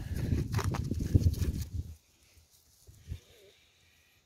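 A gloved hand pressing and patting loose garden soil: rough crunching with a few dull knocks. It stops abruptly about halfway through, then near silence with one faint thump.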